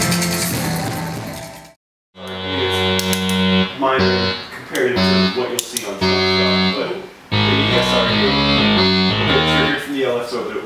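Live band music with drums fades out, and after a moment of silence a Minimoog synthesizer plays held chords over bass notes in short phrases.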